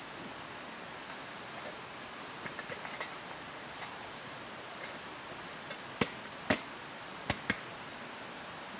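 Wood campfire burning with a steady hiss and a few faint crackles, then four sharp pops in the second half.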